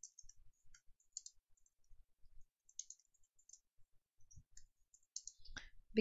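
Typing on a computer keyboard: faint, irregular key clicks as a sentence is typed.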